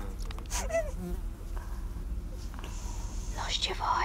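Muffled, nasal whimpering and moaning from a person whose mouth is taped shut, heard as a buzzing hum with a brief wavering cry about half a second in and a louder one near the end.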